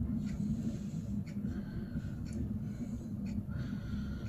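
Pellet fire burning in a rocket stove's riser tube on reduced air, a steady low rumble with faint ticks about once a second.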